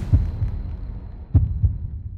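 Deep, short bass thumps in the soundtrack's sound design: one just after the music cuts out, then a heartbeat-like double thump about a second and a half in, over a fading low rumble.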